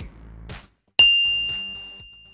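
A single bright ding, a bell-like chime sound effect struck about a second in, holding one clear high tone that slowly dies away.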